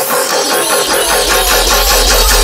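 Dubstep track in a break: a dense, noisy synth texture without drums. A deep, steady sub-bass comes in about half a second in.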